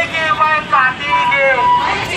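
Loud, high-pitched raised voices of protest marchers shouting slogans in short phrases.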